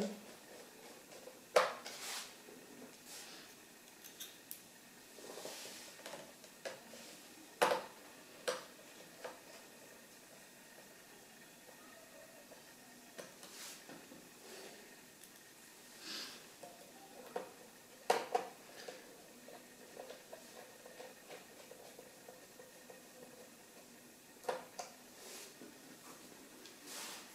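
Small screwdriver and screws tapping and clicking against a laptop's display panel and frame as the corner screws are fastened: scattered light clicks every few seconds, with soft handling between.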